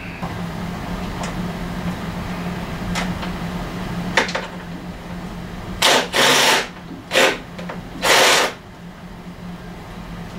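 Hand work on an outboard motor in a workshop as it is shifted and turned over by hand. A steady low hum with a few light clicks, then three loud, short, harsh noises in the second half.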